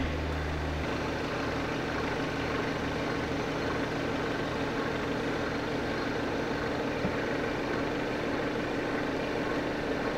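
Volkswagen Arteon idling in a workshop: a steady low engine hum. A heavier low drone drops away about a second in.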